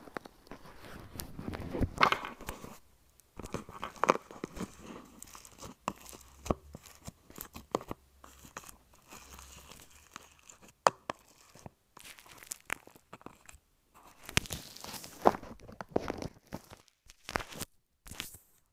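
Pink foam-bead slime being squeezed and stretched by hand around a wired earphone microphone buried in it, heard right at the microphone: irregular crackles, pops and squelches of the beads and stretching slime, with a few louder bursts.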